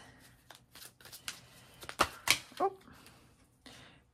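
Angel Answers oracle cards being shuffled by hand: a run of soft, quick flicks of card stock, fairly quiet, with a brief spoken "oh" a little past the middle as cards come loose from the deck.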